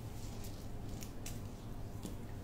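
A steady low hum with three faint, light clicks about half a second, one second and a second and a quarter in.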